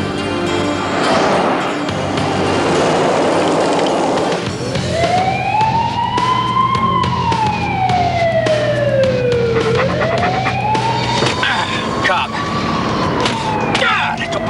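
Police siren wailing, its pitch rising and falling slowly about once every five seconds, starting about four seconds in over a steady low hum.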